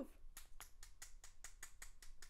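Quick, light clicks of fingernails against a plastic nail tip, about six a second, as the sealed tip is shaken and tapped to get the pieces inside moving.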